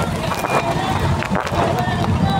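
Voices of a street crowd talking over one another, above a low steady rumble.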